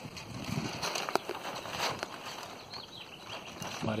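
Soft rustling and hiss with a few light clicks: the Tyvek sail and steel-tube frame of a home-built land yacht stirring in a fitful breeze as it rolls slowly over concrete.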